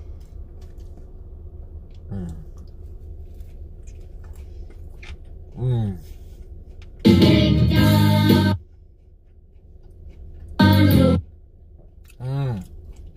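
Two loud bursts of music-like livestream alert sound, a longer one about seven seconds in and a short one near the end, over a steady low hum, with a couple of brief hummed murmurs before them.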